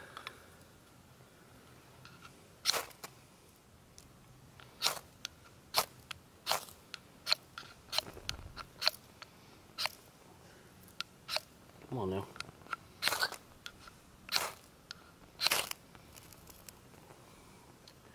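Ferrocerium rod struck with a steel striker, about a dozen quick scrapes spread unevenly over several seconds, each a brief sharp rasp. The sparks throw smoke but do not light the fire cube.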